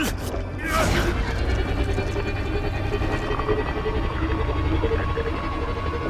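Cartoon sound effect of a small submarine's thrusters straining at full power, a deep steady rumble, as the craft tries to rock itself free. A dramatic music score plays underneath, and a brief vocal sound of effort comes about a second in.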